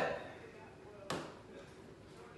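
A single sharp knock about a second in, against quiet room tone, with the end of a spoken word at the very start.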